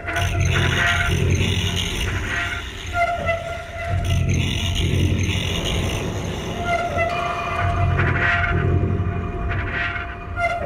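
Experimental noise and industrial music: a held droning tone over a pulsing low rumble and hiss, the pattern coming round about every four seconds.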